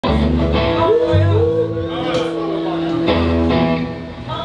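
Live rock band playing: electric guitars and drums over a low, shifting bass line, with a singer on the microphone holding and bending notes. The sound cuts in mid-song.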